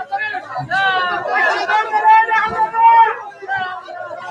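Speech only: voices talking throughout, with no other sound standing out.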